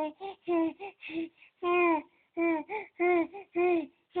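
A baby cooing and babbling: a rhythmic string of short, sing-song vowel sounds, about two a second, each falling a little in pitch at its end.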